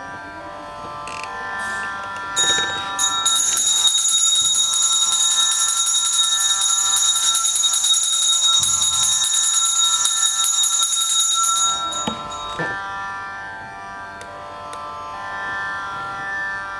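A small brass puja hand bell rung continuously during worship, a dense, steady high ringing that starts about two and a half seconds in and stops suddenly around twelve seconds. Instrumental background music in a sitar-like Carnatic style runs under it and is left on its own once the bell stops.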